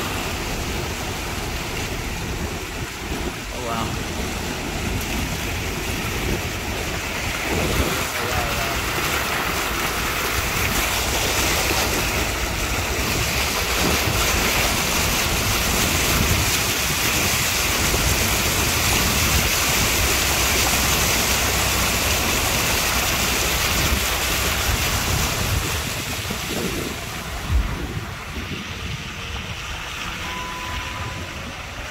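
Floodwater rushing and splashing along the side of a vehicle as it wades through a flooded street: a steady wash of water noise, swelling slightly in the middle, with a brief thump near the end.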